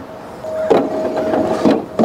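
Meshed gear wheels on a playground activity panel turned by hand, giving a steady whirring hum that starts about half a second in and stops shortly before the end.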